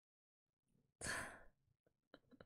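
A woman's short sigh into a close microphone, about a second in, lasting about half a second and fading.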